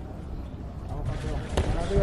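Dull thuds from boxers moving and punching in the ring, with a sharp smack of an impact about one and a half seconds in, over arena background noise and faint voices.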